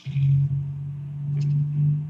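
A loud, steady low hum on an incoming telephone line, with a faint click partway through.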